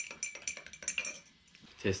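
Metal teaspoon stirring tea in a small tulip-shaped Turkish tea glass: a rapid run of light clinks against the glass that dies away after about a second.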